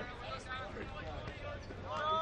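Players' voices calling out across an open football ground, with a steady low rumble underneath.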